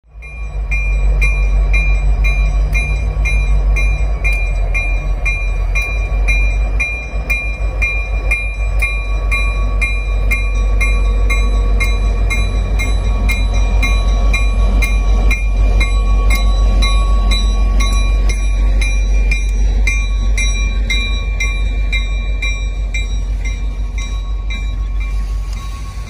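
Diesel-hauled freight train rolling slowly past: a steady low rumble from the locomotive and cars. Over it runs background music with an even beat of about two to three beats a second.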